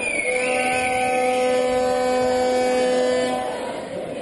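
A horn sounding in a sports hall: one long, steady note that cuts off near the end, with a wavering higher tone over it during the first half.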